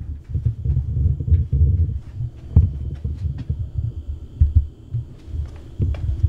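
Low, irregular thumping and rumbling from a handheld camera being carried by someone walking, with a few light clicks in the middle.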